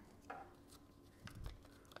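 Near silence with a few faint rustles and clicks of folded paper lot slips being handled in a glass draw bowl.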